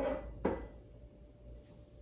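Two short knocks about half a second apart as a glass whiskey bottle is picked up off a stone kitchen counter.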